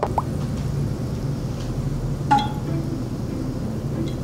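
A quiet, steady background bed with one short glassy clink a little over two seconds in, as the glass dropper and beaker touch while cider is dripped into the indicator-treated water.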